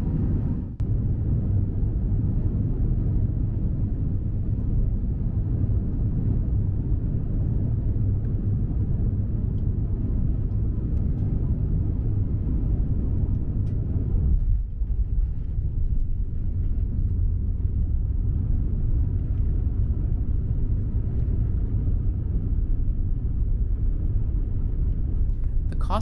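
Steady low rumble of jet airliner cabin noise inside an Airbus A350-900 in flight, broken by brief dips about a second in and again around halfway.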